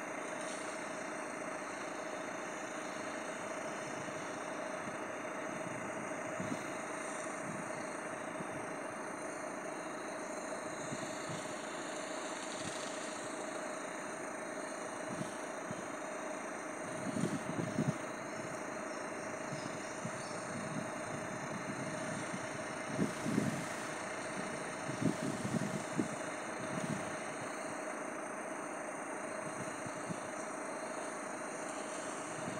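Vehicle engine idling steadily with a constant hum. A few brief low bumps come in clusters in the second half.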